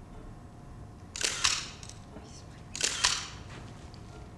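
Still-camera shutters firing twice, about a second and a half apart, each time as a quick double click.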